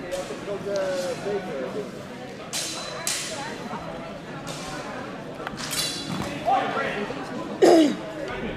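HEMA training swords clashing blade on blade several times: sharp clacks, one with a brief metallic ring, the loudest strike near the end together with a short falling cry. Voices carry in the echoing hall throughout.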